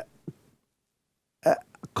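A pause in a man's speech. It is silent for about a second, then a short throaty vocal sound and a few small mouth clicks come as he starts to speak again.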